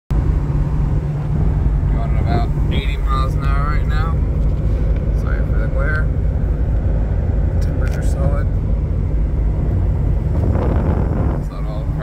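Steady low drone of a 1996 Ford Thunderbird LX cruising at about 75 mph, heard inside the cabin: road, tyre and engine noise together, with a brief rush of noise near the end.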